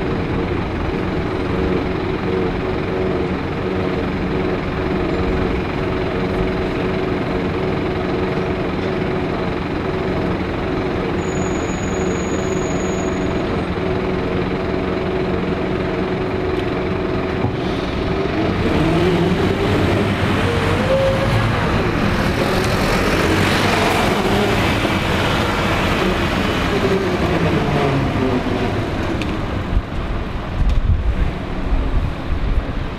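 Scania single-decker bus's diesel engine idling steadily, then pulling away: from a little past halfway the engine note rises and falls as it accelerates through the gears, growing louder in the last seconds.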